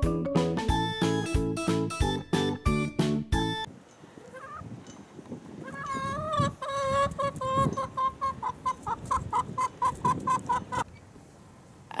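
Background music with regular piano-like notes for the first few seconds, then chickens clucking: a single call, then a fast run of repeated clucks several times a second that stops about a second before the end.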